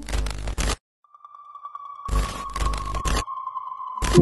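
Video-tape-style transition sound effects: a burst of static hiss, a brief silence, then a steady high beep tone that holds on. A second burst of static cuts across the beep about two seconds in.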